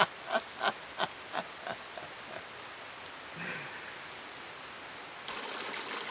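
A man's laughter trailing off in a few short, fading bursts over a steady patter of rain. About five seconds in, the rain gives way to the louder, hissing rush of a forest stream.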